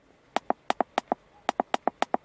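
A quick, uneven run of about ten short clicks from keypresses on an Autoxscan RS830 Pro diagnostic scanner's touchscreen keyboard as an injector correction code is deleted key by key.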